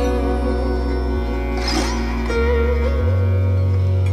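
Sitar playing in raag Bageshri over a sustained low drone.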